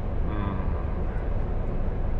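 Steady low rumble of an idling heavy diesel truck engine, heard from inside the cab.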